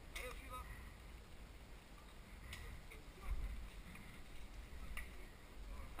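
Quiet outdoor ambience: a low wind rumble on the microphone that swells about halfway through, a few soft clicks, and faint distant voices.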